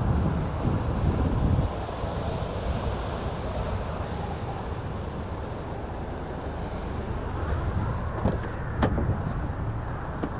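Toyota GR Yaris's turbocharged 1.6-litre three-cylinder engine and road noise while driving. It is loud for the first second and a half, then drops suddenly to a steadier, quieter drone. A single sharp click comes near the end.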